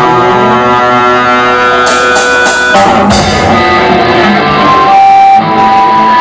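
Punk rock band playing live, led by electric guitar: long-held ringing notes for the first half, a few sharp cymbal-like hits around two seconds in, then single sustained guitar notes.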